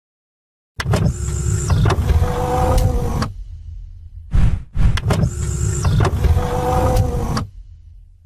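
Intro-animation sound effect: a loud mechanical-sounding sweep with a few held tones begins about a second in and runs about two and a half seconds. After a short burst it plays again the same way, ending shortly before the close.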